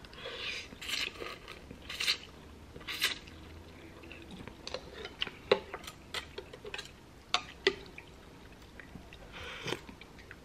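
Noodles slurped from chopsticks in several short pulls, then chopsticks and a metal spoon clicking and clinking against a ceramic bowl, and a slurp of broth from the spoon near the end.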